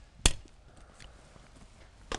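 A single shotgun shot at a clay target: one sharp report about a quarter of a second in, then only faint outdoor background.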